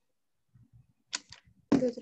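Speech only: a short pause, then a person's voice starting to speak over a video call about a second and a half in.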